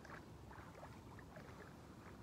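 Faint water sloshing and small splashes as a person wades into a river and crouches down in it, a scatter of short gurgles over a low steady rumble.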